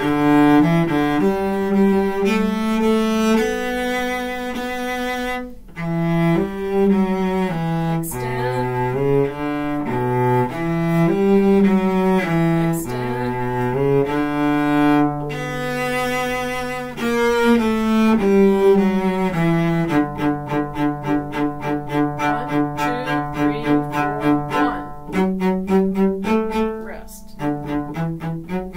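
Solo cello bowing the cello part of a simple orchestra march, one clear note after another with some longer held notes. About twenty seconds in it changes to quick, short, repeated notes, about three a second.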